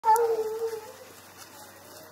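A foxhound howling: one loud, long call on a slightly falling note, fading out after under a second.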